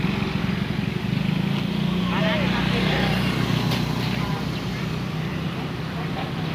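A heavy vehicle's engine running steadily, its pitch shifting slightly now and then, with brief shouting voices about two seconds in.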